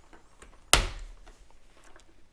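One sharp plastic click about a second in: the removable LED taillight of a Lazer Urbanize MIPS helmet snapping out of its mount in the rear vent under thumb pressure. Faint handling rustle before and after.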